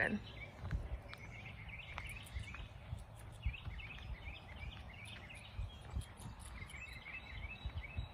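Outdoor garden ambience: small birds singing faintly with short, repeated chirps, over an uneven low rumble of footsteps and handling of the moving camera-phone.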